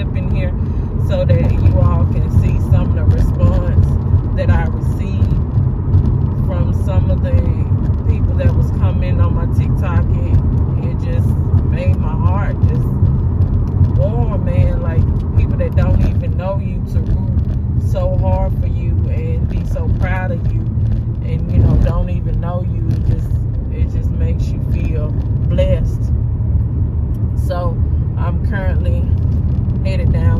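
Steady low road and engine rumble inside the cabin of a moving car at highway speed.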